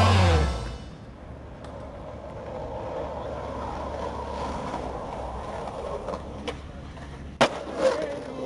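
Skateboard wheels rolling steadily over rough concrete, with a few light clicks of the board. A sharp, loud clack of the board comes near the end, with a smaller one just after.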